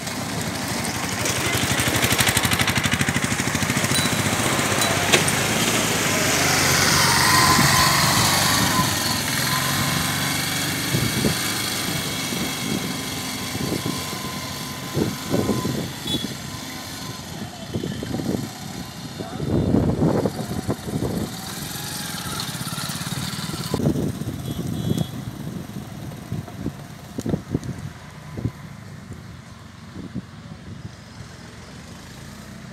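Motorbikes and an autorickshaw driving past close by on a rough dirt road, their small engines running, loudest in the first half with one passing about seven seconds in. In the second half, people's voices come and go nearby.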